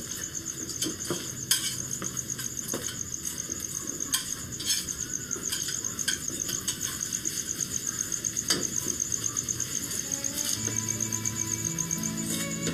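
Crickets chirping steadily, with scattered clinks and knocks of tongs and utensils against plastic containers and dishes. Soft music comes in near the end.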